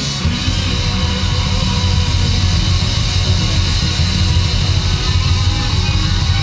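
Heavy metal band playing live, with electric guitars and a drum kit. The sound is dense and unbroken, with a heavy low end.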